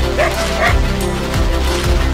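A coyote held in a trap gives a few short barks and yips, over background music with a steady beat.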